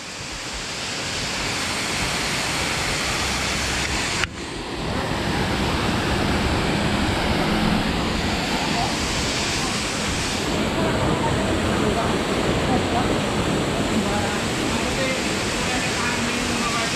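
Steady rushing of a swift-flowing water channel, with a brief dip in the sound about four seconds in. Faint voices sound under it.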